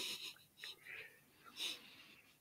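Faint breathy sounds from a person at a microphone: a short breath at the start, then a few soft puffs of breath or mouth noise.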